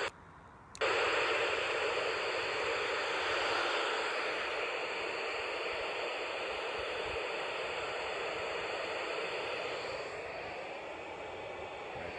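Yaesu FT-817ND transceiver's speaker hissing with open FM receiver noise. The hiss cuts in suddenly about a second in and runs steadily on, fading a little near the end. No signal from the SO-50 satellite is coming through yet, because it is still rising towards range.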